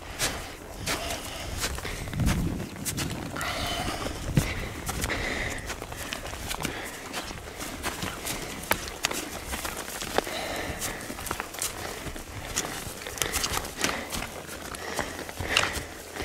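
Footsteps of hikers climbing a steep slope of grass and patchy snow: boots scuffing and crunching in an uneven rhythm, with trekking poles striking the ground.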